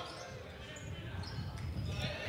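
Basketball being dribbled on a gym floor, repeated low bounces heard faintly over the hall's background chatter.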